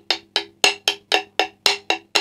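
Marching snare drum played with sticks at a slow tempo: even strokes about four a second with an accent once a second, each stroke ringing briefly at a steady pitch. It is the choo-choo moving-rudiment pattern with a left-handed flam tap, worked through note by note.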